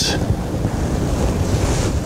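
A steady rushing noise with a deep low rumble, about as loud as the speech around it.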